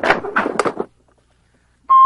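A man's voice for the first second, then a short pause, then a brief steady electronic beep near the end.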